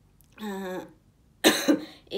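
A woman coughs once, sharply and loudly, about one and a half seconds in. She is ill with Covid-19.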